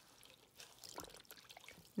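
Faint, irregular water trickling and sloshing as gloved hands squeeze raw wool fleece under hot water in a tub, pressing the dirt out without agitating it.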